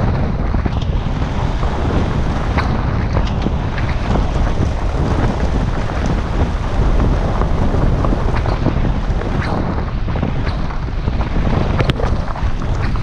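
Wind buffeting the microphone of a camera mounted on a moving car, over the steady low rumble of tyres on a gravel road, with a few sharp ticks.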